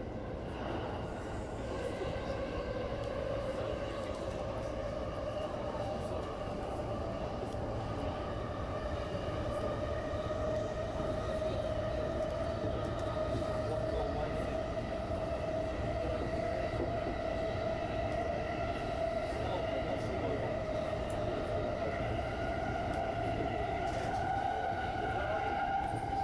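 Electric commuter train of the JR Chuo Line running on the rails, heard from inside the car: a steady rumble of wheels on track under a motor whine that slowly rises in pitch as the train gathers speed.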